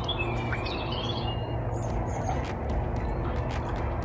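Outdoor ambience: birds chirping a few times in the first second over a steady low noise, with several short clicks in the second half.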